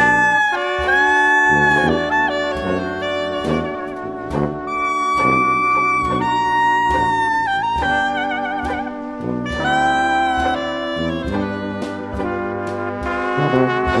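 Small New Orleans-style jazz band playing an instrumental: trumpet, trombone and reeds in held, overlapping lines over a steady beat, with one note played with a wide vibrato about eight seconds in.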